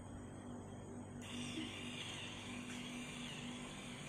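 Faint, steady electric hum of an automatic hair curler's motor, with a soft whir joining about a second in as it turns.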